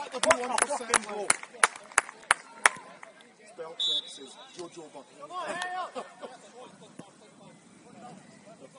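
A few people clapping at about three claps a second, with shouting voices, for the first two and a half seconds after the goal. Just before the middle, a short high whistle blast, the referee restarting play with the kick-off.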